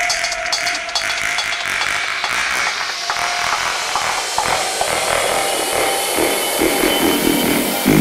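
Dubstep track in its build-up: gritty mid- and high-pitched synth textures with almost no bass, under a noise sweep that rises steadily in pitch toward the end.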